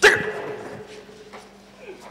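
A single loud shout or cry right at the start, sudden, its pitched tone dying away over about a second, over a faint steady hum.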